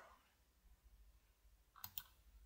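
Near silence, then two quick clicks close together near the end: a computer mouse clicked to advance a slide.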